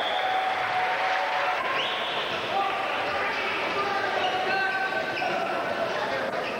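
Basketball game in a gym: a ball bouncing on the hardwood court under steady crowd chatter and shouts that echo in the hall.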